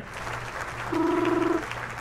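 Canned applause sound effect, with a short steady pitched tone about a second in that lasts around half a second.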